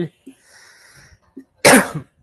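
A person coughs once, a short, loud cough near the end.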